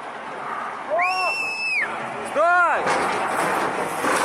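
Men's wordless shouts of alarm as a backhoe loader tips into a construction pit: one long, high yell about a second in, then a shorter, louder cry, followed by a rough rush of noise.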